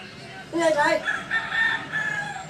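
A rooster crowing once, its last note held steady for about a second.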